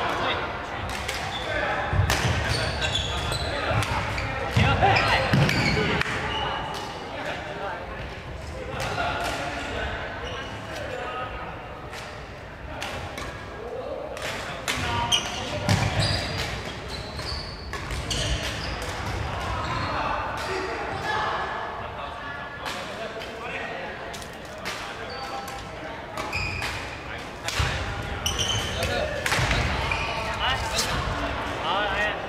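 Badminton rallies in a large echoing hall: repeated sharp racket strikes on shuttlecocks and shoes squeaking on the wooden court floor, over indistinct voices from around the hall.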